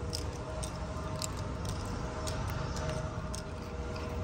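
Remote-operated power sliding door on a Toyota Hiace van running open: a faint, steady motor hum with a few light clicks.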